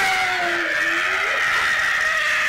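A person's long, held scream of pain, its pitch wavering slightly, after a mock wrestling jump.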